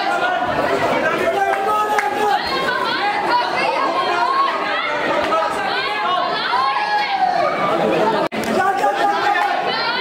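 Many voices of spectators chattering and calling out over one another. The sound cuts out for an instant about eight seconds in.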